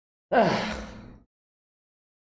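A man sighing: one short, breathy exhale of about a second with his voice falling in pitch, loudest at the start and fading out.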